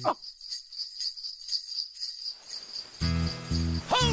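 Sleigh bells jingling in a steady shaking rhythm, after a quick falling swoop at the very start. Music with low bass notes joins about three seconds in.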